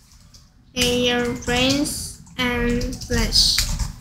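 Speech: a child's high-pitched voice saying three short phrases, over a steady low rumble of background noise.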